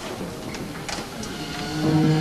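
A lull in the orchestra with a few short sharp knocks, about three a second apart, from footsteps on the wooden stage floor; the orchestra's held string notes swell back in near the end.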